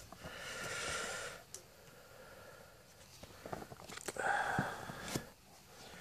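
Two soft, breathy noises like breaths through the nose, the first at the start and the second a few seconds later. Between them come a few faint paper taps and rustles as a model kit's paper instruction booklet is lifted out and opened.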